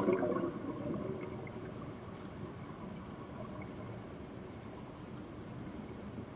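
Underwater: a diver's exhaled bubbles gurgling from the scuba regulator, fading out over the first second, then a steady faint underwater hiss.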